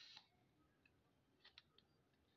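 Near silence, with a faint short rustle at the start and three faint clicks about a second and a half in, from the plastic flashlight being handled.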